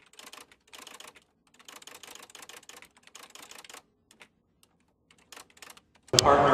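Faint typing sound effect: rapid keyboard-style key clicks in quick runs, pausing for about a second around four seconds in, then a few more clicks near the end. It accompanies text being typed onto the screen.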